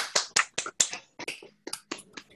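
Hand clapping: a run of irregular claps that grow quieter and sparser.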